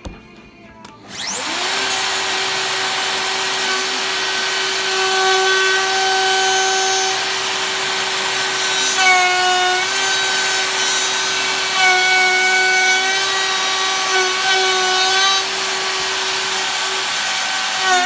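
DeWalt plunge router with a round-over bit starting up about a second in, its motor whine rising to full speed. It then runs steadily with a high-pitched whine while cutting a round-over on the edge of a board, the pitch sagging briefly under load around nine seconds.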